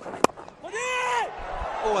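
A cricket bat strikes the ball once with a sharp crack, the loudest sound here. About half a second later comes a short, high-pitched shout.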